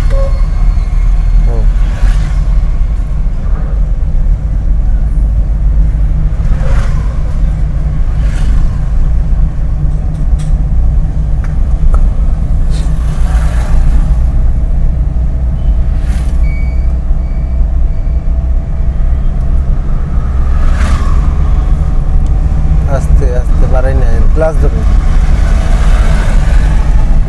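A car's engine and road noise heard from inside the cabin while driving slowly in town traffic: a loud, steady low rumble. A few short high beeps sound about sixteen seconds in.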